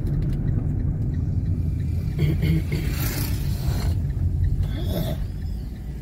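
Car engine and tyre rumble heard from inside the cabin while driving and turning, with brief hissy swells about three seconds in and again near five seconds.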